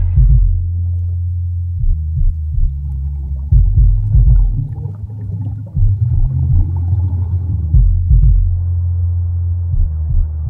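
Deep, low rumbling drone of an ambient soundtrack, swelling and dipping irregularly, with fainter higher sounds above it.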